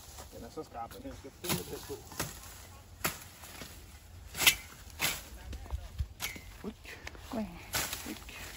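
Knife chopping through cassava stems: several sharp, irregular cuts, the loudest about halfway through.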